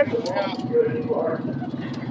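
Another car's engine idling steadily with an even low pulse, with muffled voices over it.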